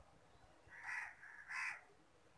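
Two short bird calls, faint, about half a second apart.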